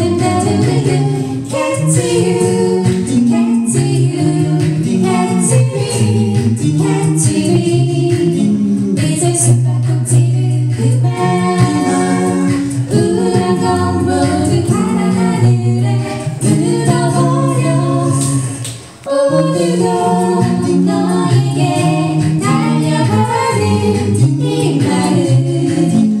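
Five-voice a cappella group, two women and three men, singing an anime theme medley in close harmony through microphones. A held bass voice runs under the chords. The singing drops out briefly about three quarters of the way through, then goes on.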